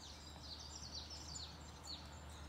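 Small songbirds chirping and singing, a quick run of short high notes that sweep downward, over a faint steady low hum.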